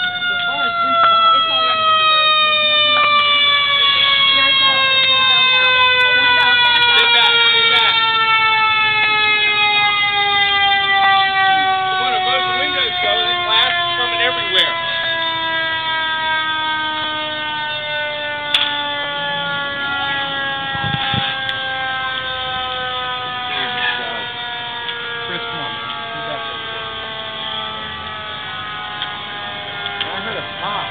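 Fire engine siren winding down, one long tone whose pitch falls slowly and steadily throughout. This is the coast-down of a mechanical siren. It is loudest in the first several seconds and then eases off.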